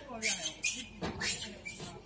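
Macaques giving several short, high squeals in quick succession, over people talking.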